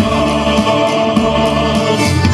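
Male vocal group singing in chorus through handheld microphones, the voices held in steady sustained notes.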